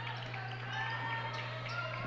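A basketball being dribbled on a gym floor, faint and irregular, over a steady low hum.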